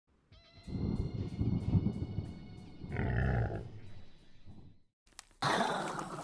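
Intro music and sound effects: a deep, rough creature-like sound with sustained high tones ringing above it, fading out about five seconds in. A click and a rushing noise follow.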